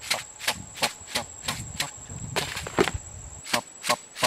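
Sharp taps, about three a second, as a small plastic bottle is tapped and shaken to scatter bait onto the ground. A thin, steady high-pitched insect whine runs underneath.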